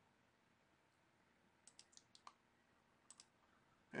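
Faint computer mouse clicks over near silence: a quick run of about five near the middle, then two more about a second later.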